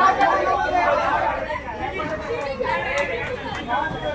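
Chatter of a group of people talking and calling out over one another, several voices overlapping.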